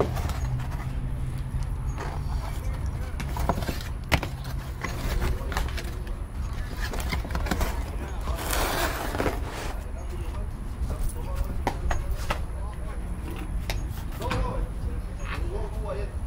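Ballfield ambience: distant voices over a steady low rumble, with a few sharp knocks and a brief burst of noise about halfway through.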